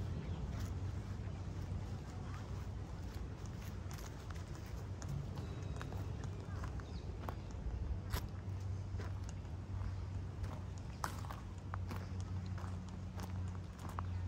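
Footsteps on wood-chip mulch, a scatter of uneven clicks and crunches, over a steady low hum.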